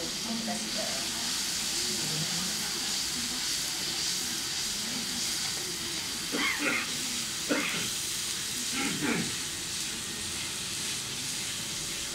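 Onions frying in hot oil in a large steel wok: a steady sizzle, with a few brief words of talk in the background.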